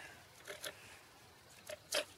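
Folding-knife blade shaving a stick of fairly hard, dry wood: a few short, faint scraping cuts, two about half a second in and two more near the end.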